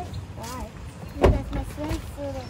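A car door shut with a single thud a little over a second in, with short snatches of voices around it.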